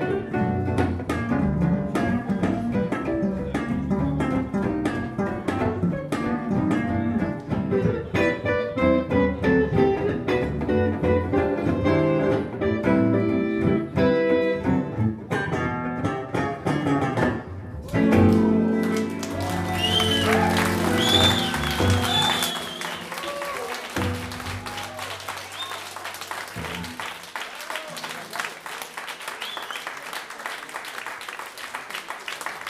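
Jazz played on two archtop electric guitars with double bass, ending on a final chord about 18 seconds in. Audience applause and shouts follow, with the clapping tapering off toward the end.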